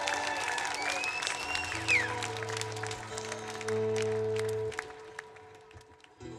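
Audience clapping and cheering after the song ends, with a whistle about two seconds in. A steady low tone sounds under the applause for a few seconds, and then everything fades out.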